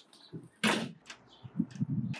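A door being handled: one sharp, loud knock-like sound about a third of the way in, then a run of soft low thumps near the end as a hand takes the lever handle of a glazed uPVC door.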